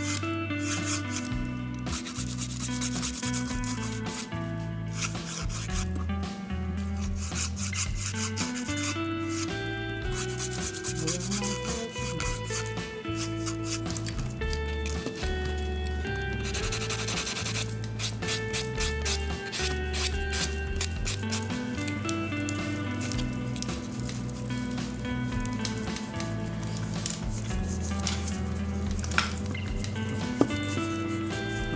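A nail file and then a buffer block rubbed in quick repeated strokes across a natural fingernail, shaping it, over background music with a steady bass line.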